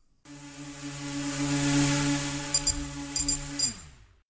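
Outro logo sound effect: a sustained synthesized tone that swells in loudness, with a few high clicks near the end, then drops in pitch and cuts off.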